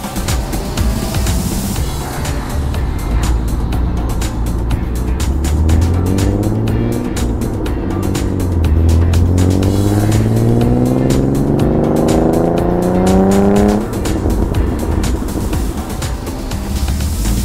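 Alfa Romeo Spider's Busso V6 engine accelerating: a short rise in pitch, a dip, then a long steady climb of about five seconds that drops off sharply near the end. Background music plays underneath.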